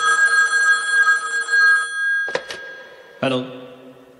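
A telephone ringing: a steady ring of several high tones lasting about two seconds, then two sharp clicks as the call is picked up.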